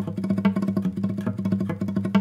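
Nylon-string classical guitar played in flamenco tremolo: the thumb, then the first finger, then the three-finger classical tremolo, repeated as a fast, even run of plucked notes over a bass. It has a very rhythmical quality.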